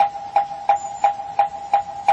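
Wooden fish (moktak) struck in a steady beat, about three knocks a second, each knock with a short hollow pitched ring that carries into the next, keeping time for Buddhist sutra chanting.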